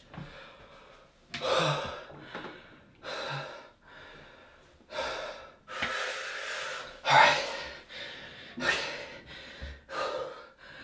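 A man's heavy, agitated breathing: a run of about seven sharp gasps and forceful exhales blown through pursed lips, the longest and loudest about six to seven seconds in.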